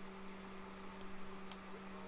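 Quiet room tone: a steady low hum over a faint hiss, with three faint clicks spread through it, while a phone call is connecting and before any ringback or recorded message is heard.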